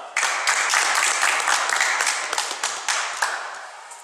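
Audience applauding. It breaks out suddenly and dies away over about three seconds.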